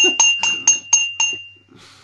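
A small bell rung rapidly, about four strikes a second, its ringing tone dying away about a second and a half in.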